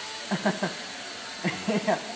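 Blade mQX quadcopter's four 8.5 mm brushed motors and props whining steadily in flight.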